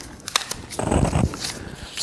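Wooden craft sticks picked up and handled on a wooden tabletop: a few light clicks, then a brief rustling scrape about a second in.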